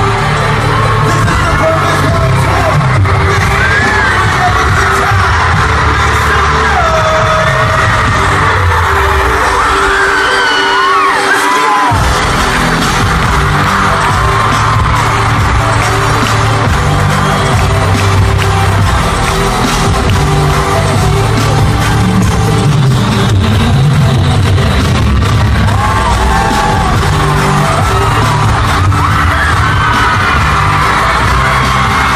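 Live pop music through an arena PA, recorded on a phone from among the audience, with high-pitched fan screams over it. The bass drops out for a few seconds and comes back in suddenly about twelve seconds in.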